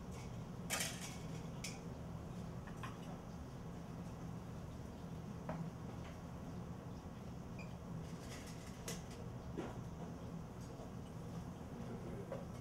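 Steady low hum of kitchen equipment, with a few light clicks and clinks of plates and spoons being handled.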